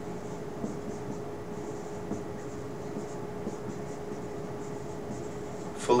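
Dry-erase marker writing on a whiteboard: faint, irregular strokes of the felt tip over a steady low hum in the room.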